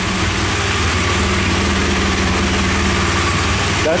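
A 2016 BMW R1200GS Adventure's liquid-cooled boxer twin idling steadily.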